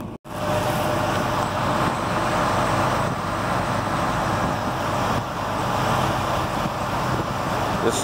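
Diesel being pumped from a fuel dispenser through the nozzle into a truck's fuel tank: a steady rushing flow with a low hum underneath.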